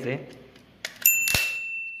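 A click, then a single bright bell ding that rings out and fades over about a second and a half: a subscribe-button sound effect.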